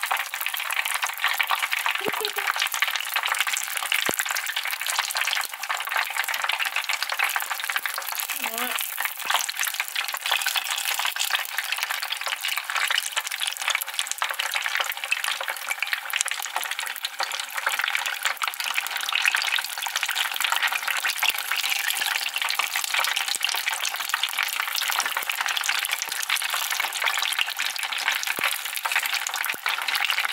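Spring rolls deep-frying in hot oil, a steady crackling sizzle.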